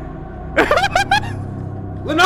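A quick run of about four sharp, rising vocal yelps about half a second in, over a steady low music bed.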